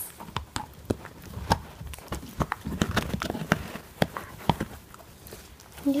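Husky puppy gnawing on a hard hollow chew bone: irregular clicks and knocks of teeth on bone, busiest in the middle and thinning out near the end.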